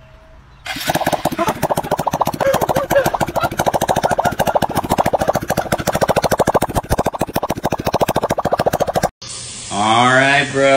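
A car's exhaust blowing through a rubber balloon stretched over the tailpipe, making it flap in a rapid, loud, buzzing rattle that sounds bad. It starts about a second in and cuts off suddenly near the end.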